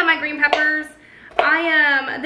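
A woman's voice speaking, with a brief pause about a second in.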